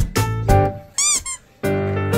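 Background music: a light instrumental tune, with a short run of quick squeaky chirps that rise and fall about a second in.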